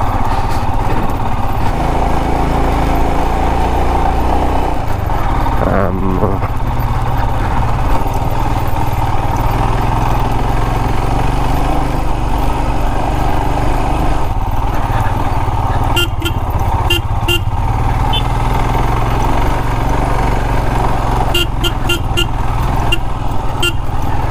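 Single motorcycle engine running steadily at low trail speed over a rough dirt track. Two clusters of short horn toots come about two-thirds of the way through and again near the end.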